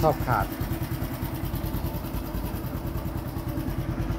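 Honda Wave 110i's single-cylinder four-stroke engine idling steadily, with an even rapid beat.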